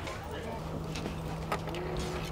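Train standing at a station platform: a steady low engine hum with a sharp click about one and a half seconds in.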